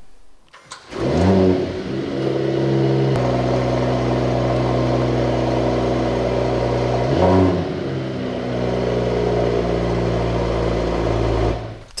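Mercedes-AMG E53's 3.0-litre inline-six engine starting with a brief flare of revs, then settling into a steady idle. It gives one short blip of revs about seven seconds in and cuts off just before the end.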